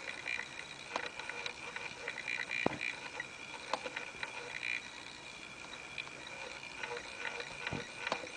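A few scattered clicks from a computer mouse over a faint steady high-pitched whine and hiss.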